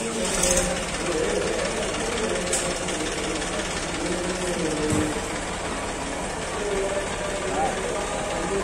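Indistinct voices of people talking in the background over a steady rumbling noise.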